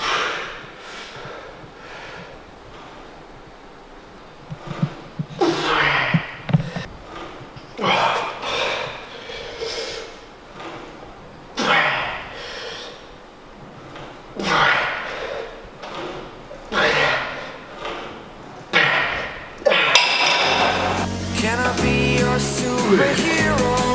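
Hard exhalations and grunts of effort, one burst every second or two from about five seconds in, as a man forces out reps of cable rope tricep extensions to failure. Music with a bass line comes in near the end.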